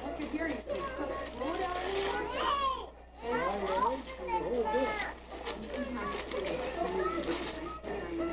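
Children's voices chattering and calling out over one another, high-pitched and lively, with a brief lull about three seconds in.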